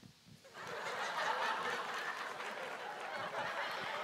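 Theatre audience laughing, coming in about half a second in after a brief hush and carrying on steadily.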